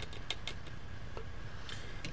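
A few faint light clicks and ticks from a plastic graduated cylinder against a glass Erlenmeyer flask as lemon juice is poured in, mostly in the first second with a couple more near the end.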